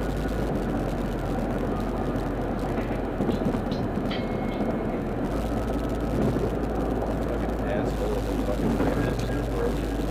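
A car cruising on a freeway, heard from inside the cabin: steady road, tyre and engine noise with a low hum.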